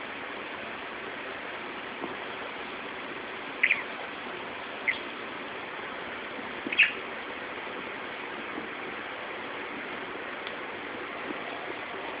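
Budgerigar giving three short chirps, spread through the first seven seconds, over a steady background hiss.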